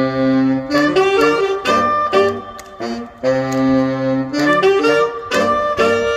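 Saxophone ensemble playing in several parts: long held chords over a low sustained note, with shorter moving notes and crisp attacks between them.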